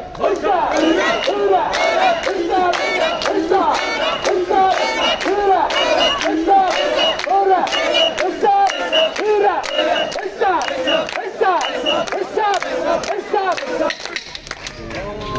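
Crowd of portable-shrine (mikoshi) bearers chanting a short rhythmic call over and over in a quick beat, with sharp claps in time with the chant.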